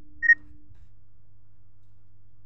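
A single short, high-pitched beep about a quarter-second in, over a faint steady low hum.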